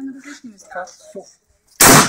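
A single loud gunshot near the end, after a moment of quiet.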